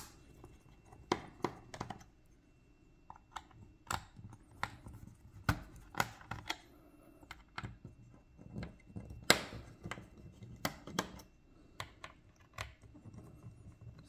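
Small Phillips screwdriver working the bottom-cover screws of a Lenovo ThinkPad X1 Carbon Gen 6: light, irregular clicks and scratches of the metal tip on the screws and the laptop's base, some sharper than others.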